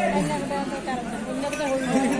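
People talking and chatting, several voices overlapping in casual conversation.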